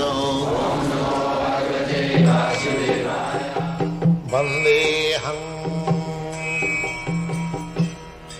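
Devotional chanting: a man's voice chanting a prayer over music, giving way about two seconds in to instrumental music with a held low note and percussion strokes.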